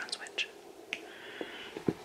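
Faint whispered speech and soft handling noises, with a short knock near the end.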